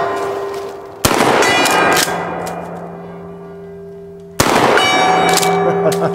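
Two 12-gauge shotgun slug shots from an Ithaca Model 37 pump shotgun, about a second in and about four and a half seconds in, each followed by a steel gong ringing on a steady tone that slowly fades. At the start the gong is still ringing from a hit just before.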